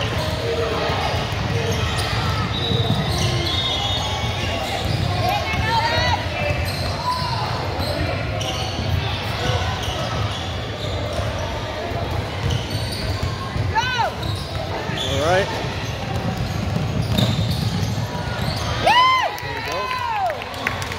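Indoor basketball game: the ball bouncing on the court and sneakers squeaking in short chirps now and then, loudest near the end, over indistinct chatter from players and spectators.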